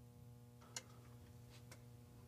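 Near silence on the audio feed: a faint steady electrical hum, with one sharp click about three-quarters of a second in and two fainter clicks near the end.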